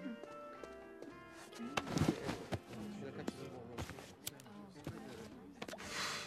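Soft background music of a cartoon soundtrack, with a breathy puff of exhaled cigarette smoke at the very end.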